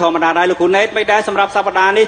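Speech only: a man talking steadily.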